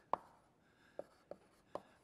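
Writing on a lecture board, faint: a sharp tap near the start, then three more short taps about a second in.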